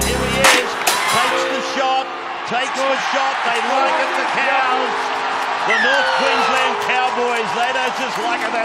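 Electronic background music: its deep bass cuts out about half a second in, leaving held chords over a light ticking beat, with voices underneath.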